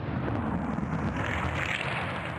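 A Supercars V8 race car going past at speed, its engine and noise growing louder as it comes close in the second half.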